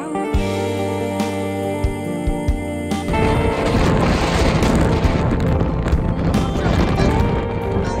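Background music with long held notes. About three seconds in, a loud rushing noise joins the music: strong wind buffeting the microphone.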